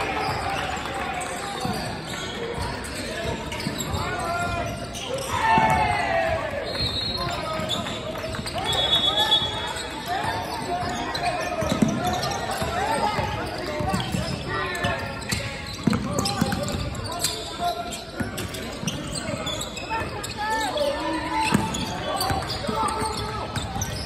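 Basketball game sounds on a hardwood court: a ball bouncing as it is dribbled, a couple of short high squeaks about 7 and 9 seconds in, and indistinct shouts from players, echoing in a large gym.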